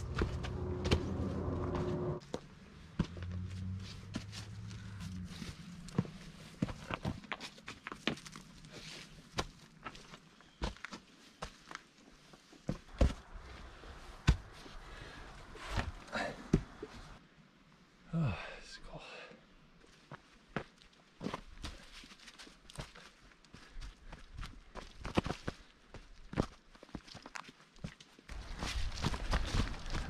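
A hiker's footsteps on a steep dirt trail strewn with dry leaves: irregular steps, crunches and scuffs as he picks his way down. A low steady hum sounds under the steps in the first couple of seconds and fades out.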